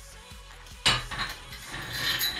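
Cast-iron weight plate clanking against the loaded barbell's sleeve and plates. A sharp clank comes about a second in, followed by ringing, clattering metal clinks.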